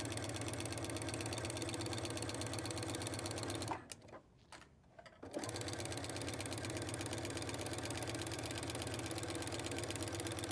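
Brother sewing machine stitching at a steady fast pace; it stops for about a second and a half just before the middle, then runs again.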